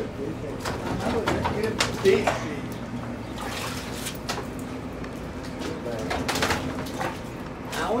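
A pigeon cooing low and short a few times, over a steady low hum, faint background voices and a few sharp knocks.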